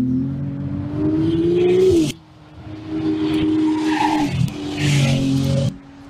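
Ferrari 296 GTB's twin-turbo V6 engine revving, its pitch climbing and then cutting off abruptly about two seconds in, then running again at steadier revs with further rises and drops.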